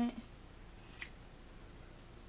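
A single click of a pair of scissors about a second in, otherwise faint room noise.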